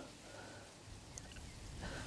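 Quiet outdoor background: a faint steady hiss, with a single brief high chirp about a second in.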